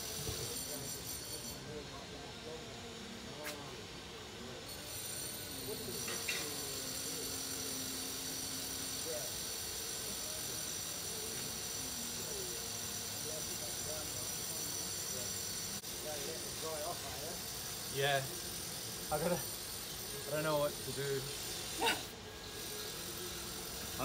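Steady outdoor background buzz of insects with a high, even hiss, and a few short bursts of voices in the last few seconds.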